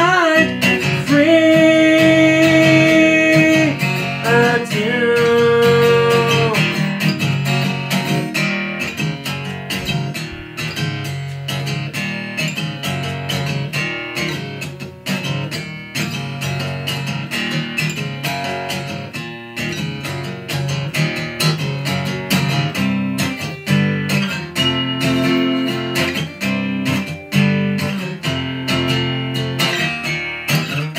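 Acoustic guitar tuned a half step down, strummed and picked in a steady rhythm through an instrumental stretch of the song. A long held sung note runs over the first few seconds before the guitar continues alone.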